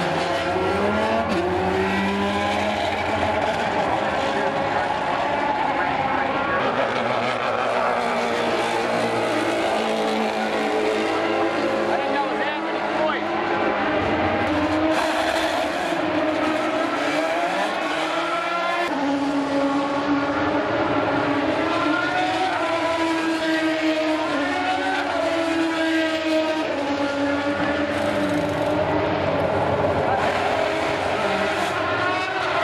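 Engines of several open-wheel race cars running at high revs on the circuit, their pitch rising and falling over and over with gear changes and passes, with several cars heard at once.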